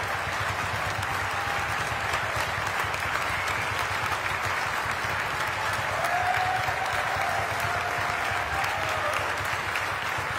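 Large concert-hall audience applauding steadily, with a faint drawn-out call from the crowd about six seconds in.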